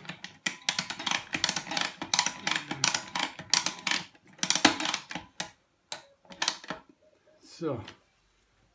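Foot-operated pump ratchet of a Christmas tree stand being worked: rapid runs of clicking for about five seconds, then a few more clicks, as the stand clamps the trunk tight.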